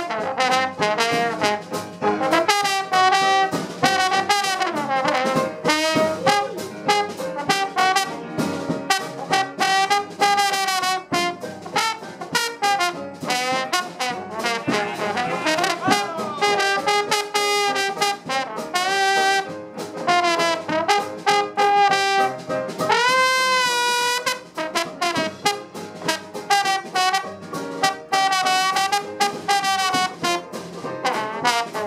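Trombone playing a lead line with slides between notes, one clear rising slide about three-quarters of the way through, backed by a traditional jazz band with banjo, string bass and drums.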